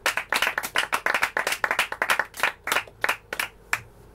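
Hand clapping: a quick, fairly even run of sharp claps, about five a second, that thins out and stops near the end.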